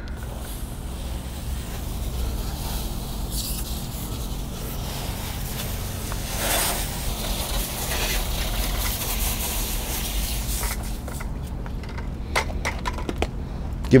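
A garden hose spray nozzle jets water onto a car's wheel, tyre and wheel well in a steady hiss. The hiss stops about three-quarters of the way through and is followed by a few scattered clicks and knocks.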